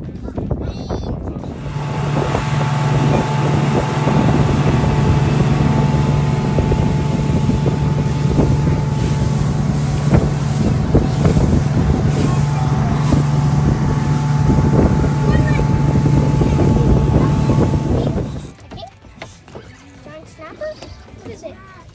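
Fishing boat's engine running steadily at speed, with wind buffeting the microphone and water rushing along the hull; near the end the sound drops away sharply as the boat comes off the throttle.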